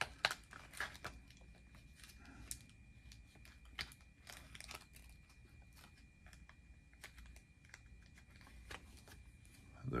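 Faint crinkling of a plastic card sleeve with scattered soft clicks and taps as a trading card is slid into a rigid plastic top loader.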